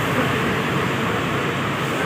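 Steady din of large buses idling in a bus terminal, with faint voices underneath.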